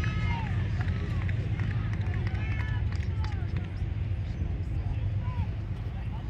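Shouts and calls from soccer players and sideline spectators, heard faint over a steady low rumble, mostly in the first half.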